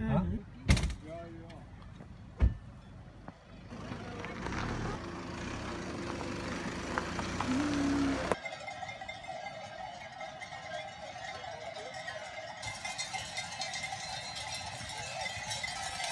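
Cowbells ringing on a herd of Swiss alpine cows, a steady jangle through the second half, after a few sharp knocks from handling the phone and outdoor noise in the first half.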